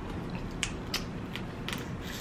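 Snow crab leg shells cracking as crab meat is bitten and picked from them: a handful of short, sharp clicks and snaps.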